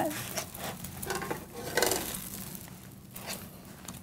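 Food sizzling faintly on a hot panini press, with a few soft knocks and scrapes as the grilled panini sandwiches are lifted off the grill plate.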